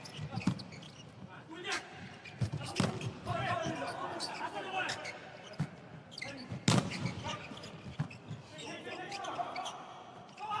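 Volleyball rally in an indoor arena: several sharp slaps of the ball being struck, the loudest about two-thirds of the way through, with voices calling out in between, all echoing in the large hall.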